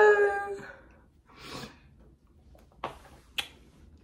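A woman's high-pitched, drawn-out vocal sound without words fades out within the first second. A soft breath follows, then two sharp clicks about half a second apart.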